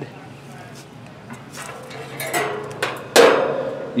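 Handling noise from a plastic clamp meter being picked up: scattered clicks and knocks, then a louder scrape about three seconds in.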